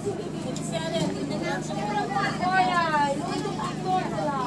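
Distant voices of footballers and onlookers calling across an open pitch, over a steady low hum.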